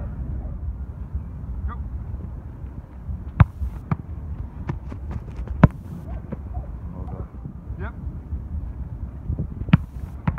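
Wind buffeting the microphone, with sharp thuds of a football being struck. The two loudest come about three and a half and five and a half seconds in, with lighter ones between them and another near the end.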